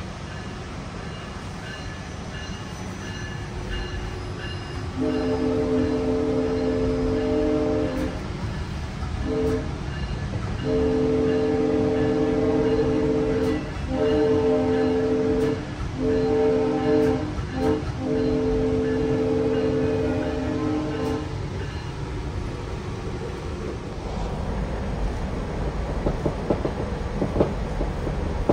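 GO Transit commuter train's horn sounding a series of blasts, heard from inside a passenger car as the train pulls out of a station. It gives a long blast, a short one, another long one, then several more blasts in quick succession, over the steady rumble of the car. Near the end, wheels click over the rail joints as the train picks up speed.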